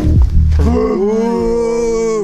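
A cow mooing: one long, drawn-out moo starting about half a second in.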